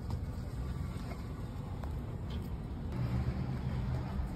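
Low, steady rumble inside a car: engine and road noise heard from the cabin.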